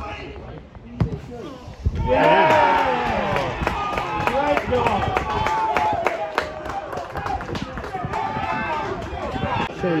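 A football struck with a single thud about a second in, then several voices shouting and cheering as a goal goes in.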